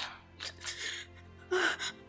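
A person gasping in short, breathy bursts, three times, over a low sustained music drone.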